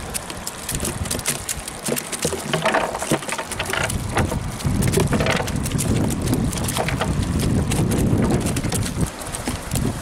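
Wind buffeting the microphone, a rough low rumble that rises and falls, with scattered sharp ticks and rustles throughout.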